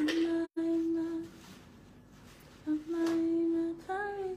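A woman humming two long held notes at the same pitch, about a second and a half apart, the first broken by a brief drop-out.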